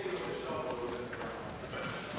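Faint murmur of voices in a large legislative chamber, with light scattered knocks.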